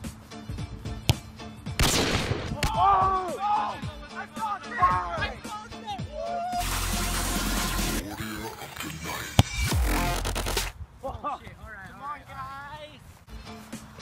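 Background music with voices over it, broken twice by gusts of wind rushing on the microphone, and one sharp thud of a ball being kicked about nine seconds in.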